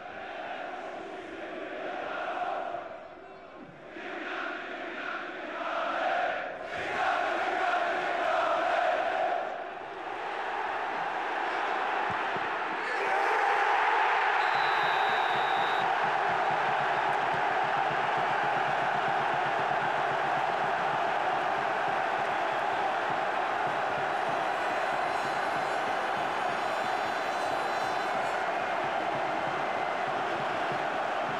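Football stadium crowd chanting and singing, swelling and fading, then about thirteen seconds in a sudden loud roar of cheering that holds steady: the home fans' reaction to a goal.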